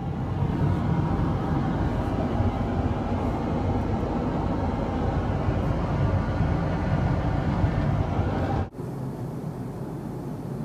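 Steady in-flight roar inside an Airbus A330's lavatory, heaviest in the low end. About nine seconds in it cuts abruptly to a quieter, steady cabin hum.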